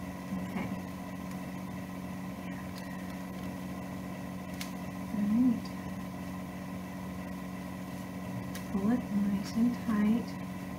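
A steady low background hum with a faint higher whine above it, like mains or appliance hum. A short murmur of a woman's voice comes about five seconds in and again near the end, with a few faint clicks from handling.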